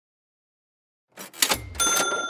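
Slideshow transition sound effect: after about a second of silence, a sudden rush of noise and a thump, then a bright bell-like ding that keeps ringing.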